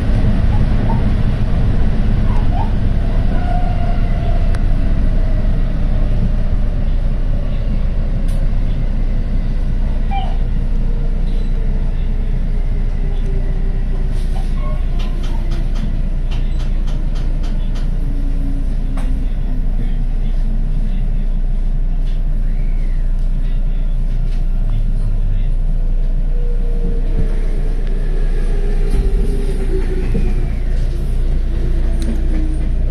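Electric commuter train heard from inside the driver's cab, running with a steady rumble of wheels on rail while the traction motor whine slowly falls in pitch as it slows into a station. A quick run of clicks comes in the middle.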